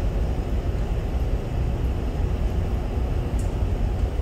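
Steady low rumble of a lecture room's ventilation, an even noise with no breaks or changes.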